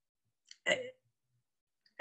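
A small mouth click, then a brief voiced sound from a person, lasting about a quarter of a second, under a second in; the rest is silence.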